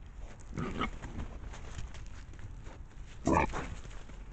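Wild boar grunting twice at close range, a short grunt about a second in and a louder one near the end, over the faint steady hiss of a trail camera's microphone.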